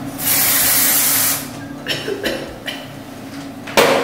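Aerosol hairspray can spraying: one long hiss of about a second, followed by several short puffs.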